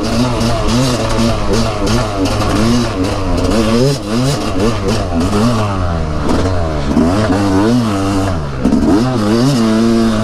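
Yamaha dirt bike engine revving up and falling back over and over as it is ridden hard along a dirt trail, its pitch climbing and dropping several times with throttle and gear changes, with rattles and scrapes from the trail.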